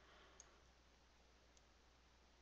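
Near silence: faint room tone with two soft computer-mouse clicks a little over a second apart.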